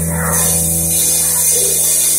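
Live rock band playing through the stage PA, with a held low bass note under the guitars.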